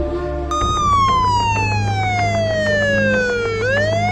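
Police siren wailing, starting about half a second in: one long slow fall in pitch, then rising again near the end, over a steady low hum.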